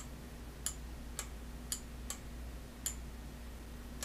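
Computer mouse clicking: about six faint, short clicks at uneven intervals over a low steady hum.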